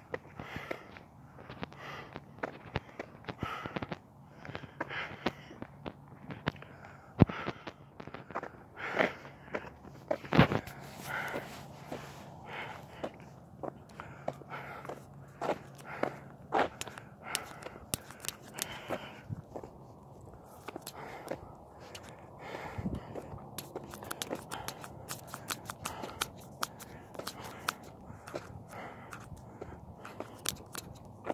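A person walking, footsteps falling about once a second, with two sharp knocks about 7 and 10 seconds in and a denser run of crackling clicks over the last several seconds.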